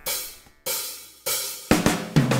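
Drum kit count-in on a backing track: three cymbal strikes about two-thirds of a second apart, each ringing away, then a quick drum fill with the first low bass notes near the end as the band comes in.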